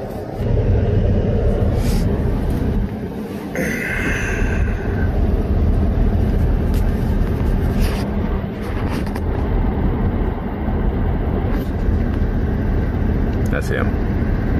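Steady low vehicle rumble heard from inside a parked pickup's cab, with traffic passing on the highway alongside. A brief higher hiss comes about four seconds in.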